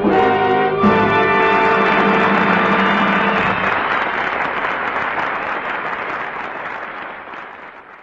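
A big band with brass holds the song's final chord, which ends about three and a half seconds in, and audience applause follows and fades away.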